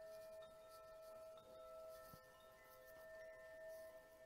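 Faint bell-like ringing from a metal chime instrument: one held tone with several higher overtones ringing on steadily, with a few brief higher pings.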